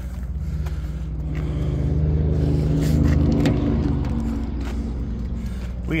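A motor vehicle's engine running, swelling to its loudest about halfway through and then fading, as of a vehicle driving past.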